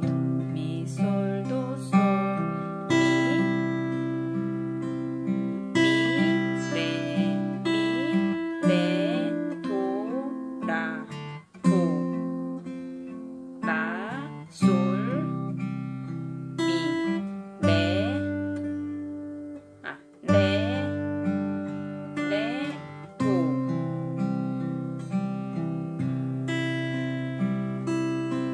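Steel-string acoustic guitar played slowly fingerstyle in C: a 6/8 waltz arpeggio picked under a melody line, with short slides between some melody notes.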